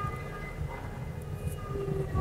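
Faint held tones that fade in and out over a low rumble, from the music video's soundtrack.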